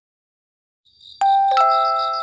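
Near silence for about the first second, then a faint high shimmer and two ringing bell-like chime notes, the second lower, like a ding-dong: the start of a glockenspiel-style melody.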